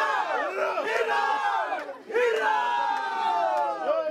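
A crowd of people cheering and shouting together in two long, drawn-out swells, the voices falling in pitch as each one ends.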